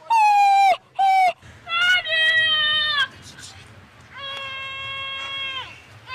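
A woman wailing in loud, high-pitched, drawn-out cries: several short wails early on, then a longer held wail of over a second in the second half.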